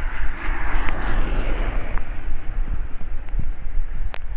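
Strong wind buffeting the microphone over steady heavy rain, with a car's tyres hissing along the wet road as it passes.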